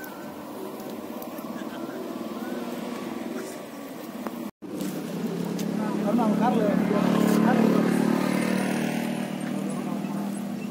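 A motor vehicle engine passing on the road, growing louder to a peak about three-quarters of the way through and then fading, with people's voices faint beneath it. The audio drops out for an instant about halfway through.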